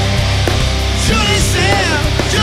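Live heavy metal band playing loud through a festival PA: distorted electric guitars, bass and drums in a steady driving rhythm. A gliding melodic line comes in over the top in the second half.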